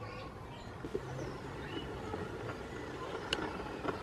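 Steady low background rumble with faint bird chirps and a few sharp clicks.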